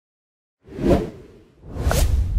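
Intro-animation sound effects: a whoosh that swells and fades about two-thirds of a second in, then a second swelling whoosh with a short falling blip near the end as a low rumble builds.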